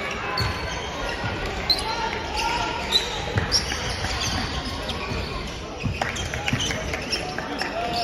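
Gymnasium hubbub: players' voices chatting, short high squeaks of basketball shoes on the hardwood court, and a few low thuds of a basketball bouncing.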